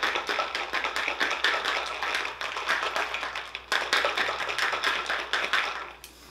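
Ice cubes rattling inside a metal travel cup used as a cocktail shaker, shaken hard in a fast, steady rhythm that pauses briefly about three and a half seconds in.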